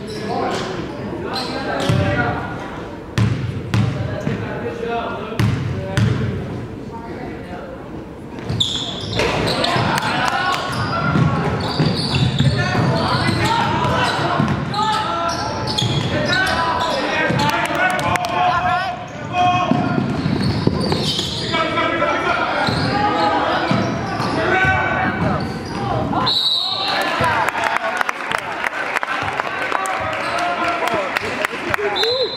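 Basketball game on a gym hardwood court: the ball bouncing, with voices calling out around the court in the echoing gym. A short whistle blast comes near the end.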